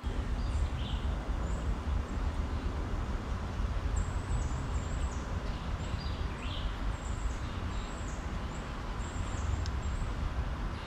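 Outdoor woodland ambience: a steady low wind rumble on the microphone, with scattered short, high bird chirps that come more often from about four seconds in.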